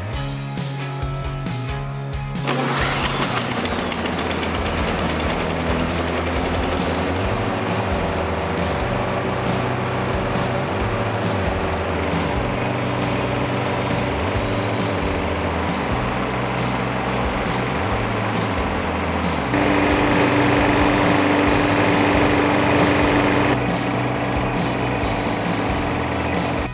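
Walk-behind lawn mower's small engine running steadily at a constant speed, starting about two seconds in and louder for a few seconds near the end, with background music.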